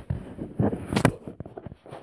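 Handling noise from a phone camera being moved about: irregular low knocks and rustles, with one sharp click about a second in.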